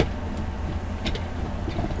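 Steady low background hum with a few faint clicks about a second in.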